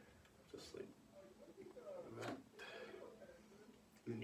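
Faint handling noise as a bassoon's bass joint is worked up and out of the boot joint, with a few soft sounds and a short sharper one a little past the middle; overall very quiet.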